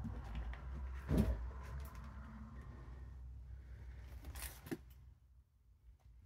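Footsteps and handheld-camera handling noise from someone walking slowly into a cluttered room, over a low rumble. There is one louder thump about a second in and a few sharp clicks at about four and a half seconds, then it goes almost quiet.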